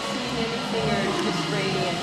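Indistinct voices of several people talking over a steady background hubbub.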